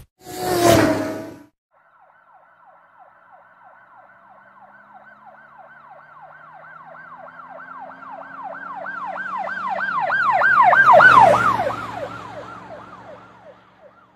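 Emergency vehicle siren in yelp mode: a fast falling wail repeating three to four times a second. It grows louder to a peak about three-quarters of the way through, then fades as it passes, heard from inside a moving car. A short loud noise comes first, in the opening second.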